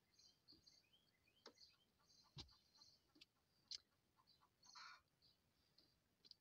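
Near silence, with faint bird chirps from outside the vehicle and a few soft clicks.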